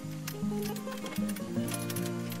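Background music: a melody of held notes that change pitch every half second or so, over a bass line.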